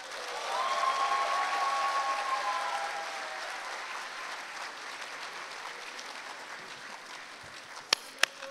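Audience applauding at the end of a dance number, swelling about half a second in and then slowly dying away. Over the first few seconds one voice holds a long cheer.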